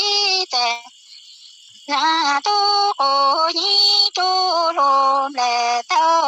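A woman singing Hmong sung poetry (lug txaj) with no instruments, in long held notes that step between a few pitches and bend at the phrase ends. There is a pause of about a second near the start before she goes on.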